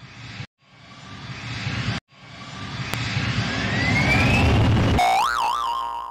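Intro sound effects: three rising whooshes, each cut off sharply, the third longest and loudest with a rising whistle in it, then a wobbling cartoon boing about five seconds in.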